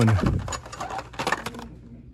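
Blister-packed Hot Wheels cards being handled: a quick, irregular run of plastic-and-cardboard clicks and rattles as the packages are flipped through.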